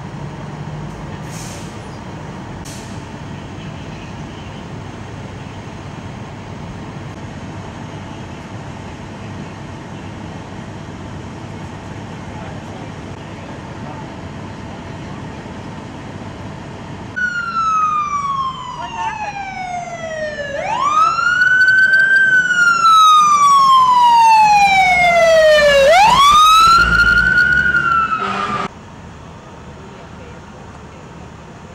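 Steady low background rumble, then a loud emergency vehicle siren starts suddenly about 17 seconds in. It wails slowly down and up in pitch twice and cuts off abruptly near the end.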